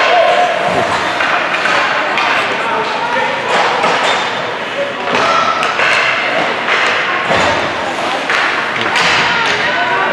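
Youth ice hockey game heard from the stands: spectators' voices and calls mixed with repeated knocks and thuds from sticks, puck and players hitting the ice and boards.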